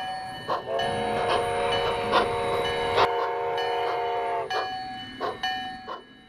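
Steam locomotive chime whistle blowing one long blast of about four seconds, a chord of several tones sounded together. A locomotive bell rings steadily under it, about one stroke a second.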